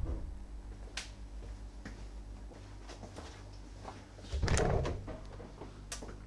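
A refrigerator door being pulled open: a short, muffled rush of sound about four and a half seconds in, with faint clicks before and after.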